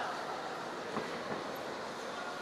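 Steady hall noise from a wrestling arena, with a couple of soft knocks about a second in from the wrestlers grappling on the mat.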